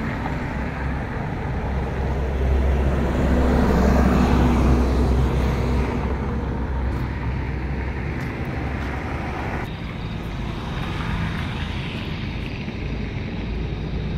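Road traffic noise, with a passing vehicle's rumble swelling to its loudest a few seconds in and then fading.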